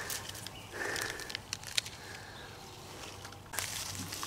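Faint rustling of grass and leafy weeds with small scattered crackles and snaps as a hand parts the plants to pick morel mushrooms, with a louder rustle near the end.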